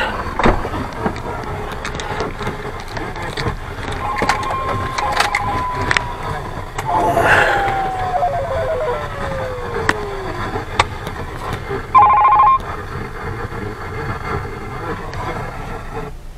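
Electronic tones inside a car cabin: a steady tone about four seconds in, then a long falling glide, and a brief loud beep about twelve seconds in, with scattered clicks over steady background noise.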